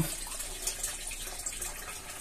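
A thin stream of water pouring steadily into an aquaponics fish tank, a constant splashing trickle on the water surface.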